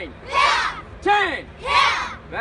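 Call-and-response taekwondo drill shouting: a single voice calls out and a group of children answer with a shout in unison, twice.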